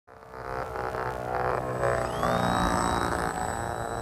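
Electric motor and propeller of a small foam RC biplane running, with a buzzy drone and a high whine that rises in pitch about two seconds in as the throttle opens for launch, then holds steady.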